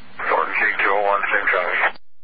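A voice talking over a police dispatch radio channel: narrow, hissy radio sound, with the transmission cutting off abruptly just before the end.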